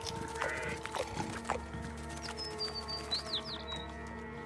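Soft background music with long held notes, joined by a cartoon bluebird's high whistled chirps and quick tweets in the second half.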